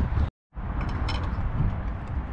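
A sudden cut to dead silence for a moment, then a steady outdoor rush with a few faint light metallic clicks about a second in, as steel pry bars are set against a truck's wheel hub.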